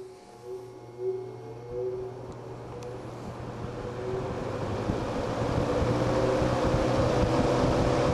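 A Montgomery Ward Tru-Cold box fan (made by Lasco), single-speed, starting up from the switch: a steady motor hum with a whine that rises in pitch as the blades come up to speed, and air rush that grows steadily louder. It runs "still a little noisy", a noise the owner means to quiet with a rubber washer.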